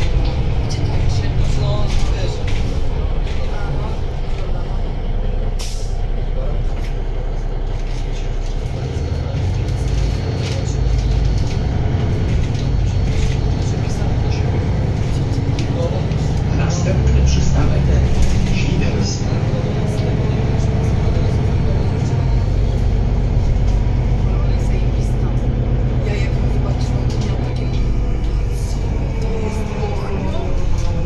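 Cabin sound of a Solaris Urbino 12 III city bus under way: its Cummins ISB6.7 six-cylinder diesel runs with a steady low drone, swelling briefly about halfway through, while small rattles and clicks come from the interior fittings.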